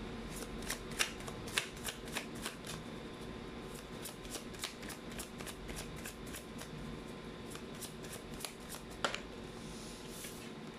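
A tarot deck being shuffled by hand: a quiet, quick run of soft card clicks and slaps, a few louder than the rest.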